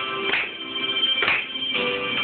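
A group singing an upbeat song together with music, with hand claps on the beat about once a second.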